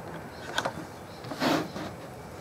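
A steel ruler and pencil working on a plywood sheet: a short scrape about half a second in, then a longer, louder scrape about a second and a half in.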